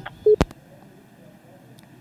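Telephone line on the studio feed: a short low beep and a sharp click just under half a second in, then faint steady line hiss.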